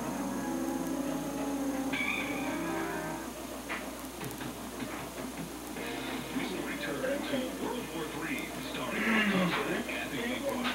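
Indistinct voices and music, like a television or radio playing: held musical tones in the first few seconds, then muffled, unintelligible voices from about six seconds in.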